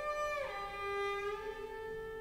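Solo cello played in its high register: a bowed held note slides down in pitch about half a second in and settles on a lower sustained note.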